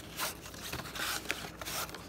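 Cardboard incense packets scraping and rubbing against each other and their box as they are slid out by hand, in several short strokes.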